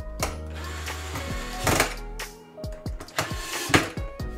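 Cordless electric screwdriver running in a few short bursts as it drives the screws on a metal electrical box.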